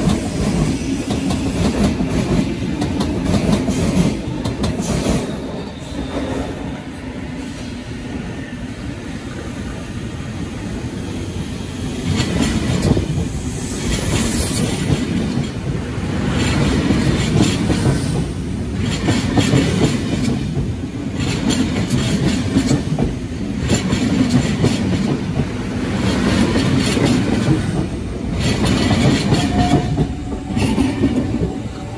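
Sydney Trains K set double-deck electric train passing close by, a steady loud rumble of wheels on rail with a regular clickety-clack over the rail joints.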